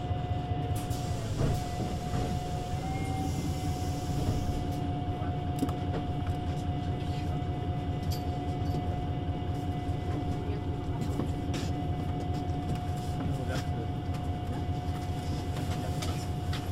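A VDL Citea LLE 120 city bus under way at a steady speed: its diesel engine drones evenly with a constant high whine over it, and short clicks and rattles come and go.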